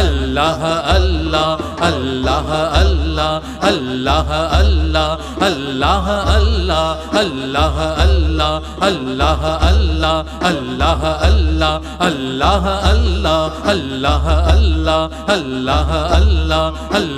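Sufi dhikr: the name "Allah" chanted over and over in a continuous, melodic line, with a steady low beat about every three-quarters of a second underneath.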